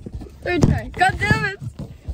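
Women's voices in a car cabin, two short spells of talk or exclamation that are not clear words, with clicks and taps of fingers handling the phone right over its microphone.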